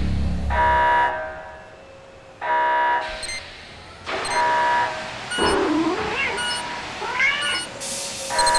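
Electronic countdown beeps: a buzzy tone about half a second long, repeating roughly every two seconds, three times. A cat meows twice between the later beeps.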